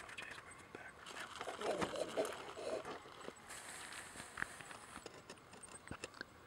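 Faint outdoor field sound: scattered small clicks and soft rustling, with a quiet murmur of a voice in the first half.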